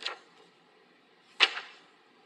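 A single brief swish of paper about one and a half seconds in, as a page of handwritten notes is turned while someone searches them.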